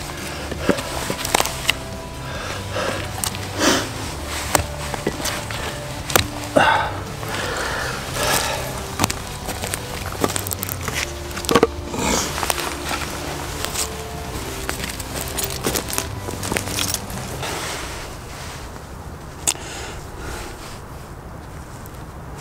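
Irregular knocks, cracks and scrapes of a survival knife being worked, over faint background music.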